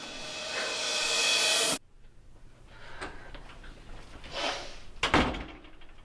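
A rising wash of noise swells and then cuts off abruptly about two seconds in. Near the end comes a single loud thump of a heavy glass door opening.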